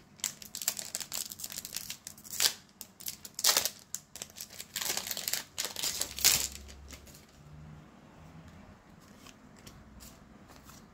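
A Pokémon booster pack's foil wrapper crinkling and crumpling in the hands. Loud sharp crackles come in a run over the first seven seconds, then only faint handling.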